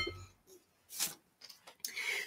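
A bottle set down on the table with a clink that rings briefly, then a soft knock about a second in and faint clicks near the end as another bottle is picked up and handled.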